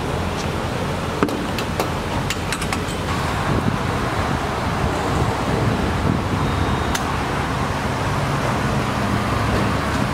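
Gasoline being pumped through a gas-station dispenser nozzle into a car's tank: a steady rush of flowing fuel and pump hum, with a few sharp clicks in the first three seconds.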